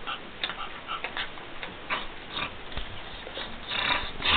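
Two dogs, a Jack Russell Terrier/Chihuahua mix and a pit bull puppy, play-fighting up close: a string of short, irregular mouthing and breathing noises, several a second.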